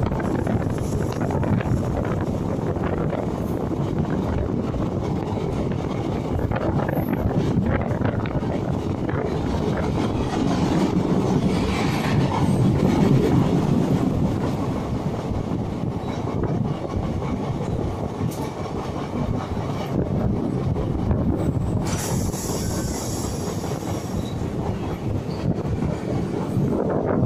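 DEMU passenger train running at speed, heard from its open doorway: a steady rumble of wheels on the rails that swells around the middle, and a brief high squeal near the end.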